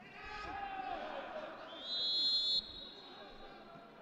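Referee's whistle blown once, a sharp high blast of just under a second, stopping play for a foul that draws a yellow card. Before it, men's voices shout on the pitch.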